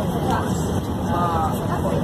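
Steady low road and engine rumble of a coach travelling at speed, heard from inside the cabin, with people's voices talking over it.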